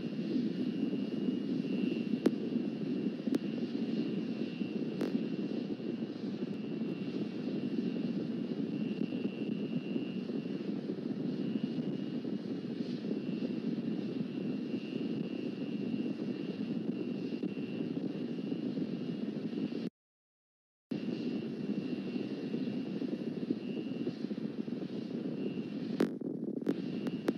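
Steady low rumbling noise with a faint, steady high-pitched whine above it; the sound cuts out completely for about a second near the end, then resumes.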